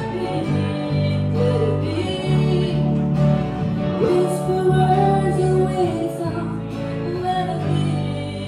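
A small live band playing a song: a woman sings the lead melody over electric bass and guitar.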